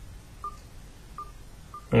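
Kindle Fire tablet's volume-preview beep, sounding three times as the on-screen volume slider is touched: short, faint single-pitch beeps a little under a second apart.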